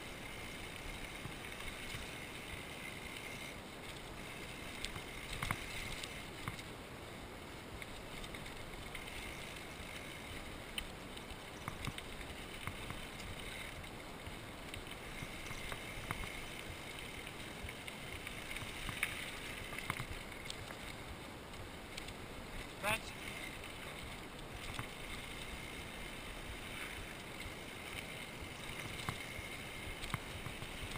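Orange Five mountain bike riding fast down loose gravel singletrack: a steady rumble and rattle of tyres on gravel and the bike shaking over the rough surface, with a few sharp knocks from bumps, the loudest about two-thirds of the way through.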